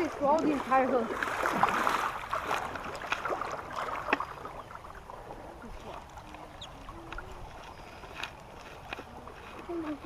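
Creek water running over a low concrete weir, loudest in the first few seconds and then quieter, with a few light clicks. Voices are heard briefly at the start.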